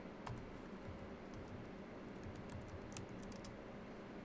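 Computer keyboard typing: faint, irregular keystrokes over a steady low hiss.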